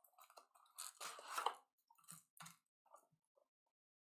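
Faint crinkling and rustling of foil trading-card pack wrappers as packs are pulled out of the box and handled, busiest about a second in, then thinning to a few light ticks.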